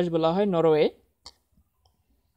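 A voice speaking Bengali, reading a quiz item aloud, which stops just under a second in; the rest is near silence with one faint click about a second and a half in.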